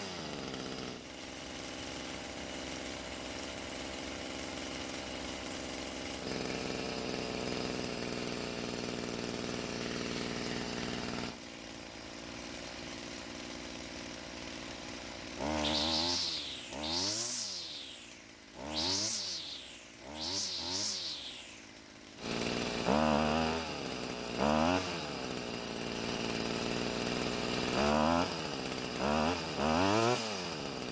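Stihl FS38 string trimmer's small two-stroke engine idling steadily. About halfway through it is revved in a series of short throttle blips, its pitch rising and falling again and again to the end.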